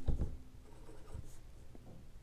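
Marker pen drawing on a whiteboard: faint rubbing of the felt tip across the board.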